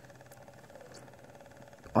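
A faint, steady low hum with a light buzz above it, in a pause between speech.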